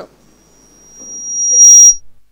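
Public-address microphone feedback: a high, steady whistle that swells from faint to very loud over about a second and a half, distorting at its peak and then cutting off suddenly at the end.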